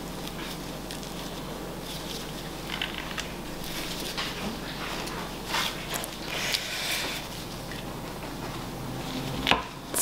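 Soft, scattered handling noises of gloved hands flexing and pressing a silicone soap mold to push out a bar of cold process soap, over a faint steady low hum.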